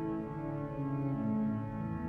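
Cavaillé-Coll pipe organ playing soft, sustained low chords that move slowly from one harmony to the next.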